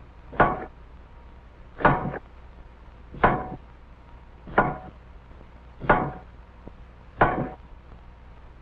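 Automatic punch press stamping metal chime bars for a toy music box: a sharp clank with a short ring at each stroke, regular at about one stroke every 1.4 seconds, six strokes in all.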